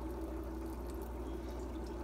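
Water trickling steadily in an aquarium, with a low steady hum beneath it.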